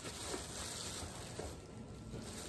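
Plastic shopping bags rustling and crinkling as hands rummage through them in a cardboard box; the rustle is soft and fades a little near the end.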